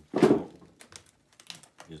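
Scissors snipping open a plastic bag: one loud rustle of plastic about a quarter second in, then a run of light, sharp snips and crinkles.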